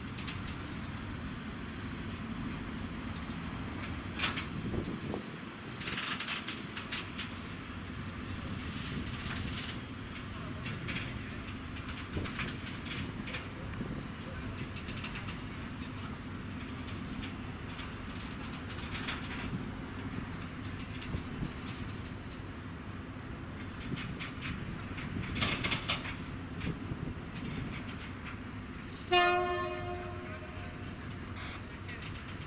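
SM42 diesel shunting locomotive running steadily at low speed while hauling a string of open coal wagons, with occasional clanks and knocks from the wagons and their couplings. Near the end a sudden loud horn blast sounds.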